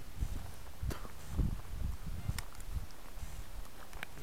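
Low, irregular rumbling and knocking on the camera microphone as the camera is moved, with two sharp clicks about one second and a little over two seconds in.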